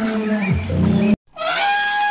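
Animal call sound effects: a long held call that cuts off abruptly just past halfway, then after a brief silence a higher call that falls in pitch.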